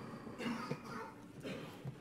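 Faint coughing from a seated audience in a large meeting room, two short bouts about a second apart.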